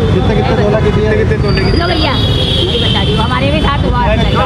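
Street traffic: a vehicle engine runs close by with a steady low rumble, under faint voices. A thin, high-pitched tone sounds for about two seconds in the middle.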